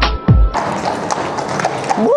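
Hip-hop music with deep, falling bass notes that cuts off about half a second in. After it comes a horse's hooves clip-clopping at a walk on a paved road, with outdoor street noise.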